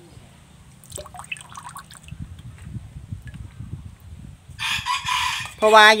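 Thick rice-and-milk slurry poured from a plastic cup into the narrow neck of a plastic bottle, gurgling unevenly. Near the end comes a short, loud, harsh sound of about a second.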